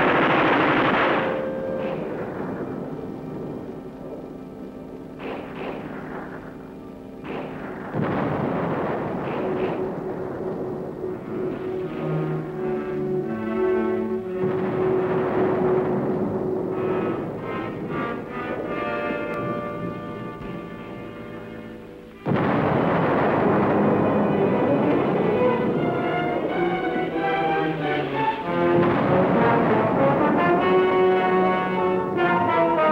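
Dramatic orchestral film score with brass and timpani, mixed with shell explosions. A loud blast opens it and dies away, and the sound surges again suddenly about eight seconds in and about twenty-two seconds in.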